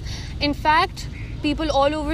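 A woman speaking over a steady low rumble of road traffic.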